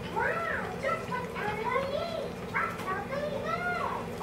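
A child's high voice humming or singing softly without words, a string of short notes that each rise and fall.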